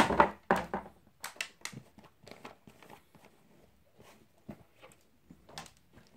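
Intermittent rustling and a few light knocks from handling the boots and their packaging. The loudest comes right at the start, then short scattered rustles and clicks with quiet gaps between.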